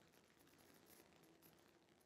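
Near silence: a pause in a video-call conversation, with only faint line hiss.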